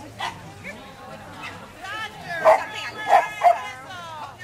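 Dog barking, three loud short barks in quick succession in the second half.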